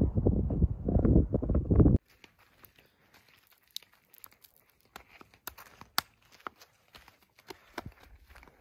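Wind buffeting the microphone, which stops suddenly about two seconds in. Then faint, scattered ticks and light crunches of sandy dirt as a small child lets sand trickle from her hands onto a rock and steps about on the dirt.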